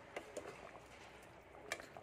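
Jackfruit and coconut-milk stew bubbling faintly as it simmers in a pot, with a few soft pops.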